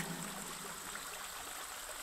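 Faint, steady, hiss-like background with no events or changes.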